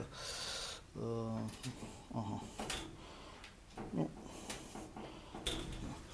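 A man's drawn-out hesitation sound, a few faint voice fragments, and faint clicks and rustles of handling.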